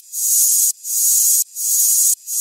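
Reversed trap sound effect: a high, hissing swell that fades in and then cuts off sharply, looping about three times in two seconds.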